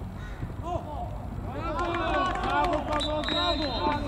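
Several men shouting and cheering together, starting about a second and a half in and getting louder, the outburst that follows a goal in a football match.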